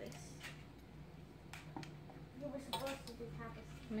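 Faint clicks and scrapes of a metal measuring spoon scooping powder from a plastic container, over a low steady hum.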